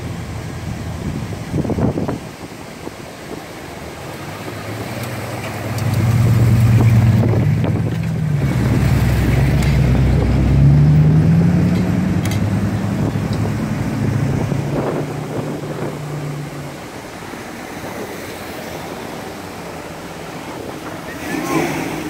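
A classic car engine running at low speed close by, loudest for several seconds in the first half; its pitch climbs as it revs up about nine to eleven seconds in, then it settles and fades after about seventeen seconds.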